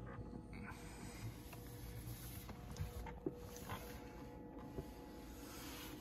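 Quiet room tone with a faint steady hum and a few soft clicks.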